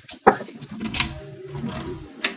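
A sharp click about a quarter second in, then lighter clicks and rattles, with a second distinct click near the one-second mark.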